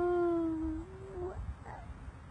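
A young child's drawn-out vocal sound: one long, steady held note that fades out a little over a second in.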